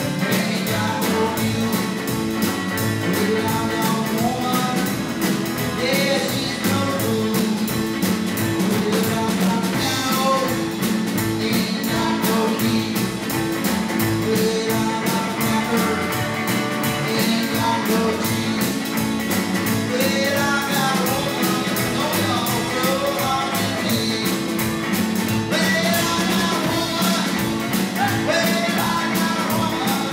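Live rockabilly band playing at an even loudness with a steady beat: archtop electric guitar through a small amp, upright bass and drum kit.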